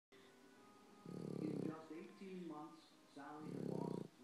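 Sleeping Boston Terrier snoring, with slack lips fluttering and bubbling: two buzzy snores, one about a second in and one near the end, with whistly, wavering pitched breath sounds between them.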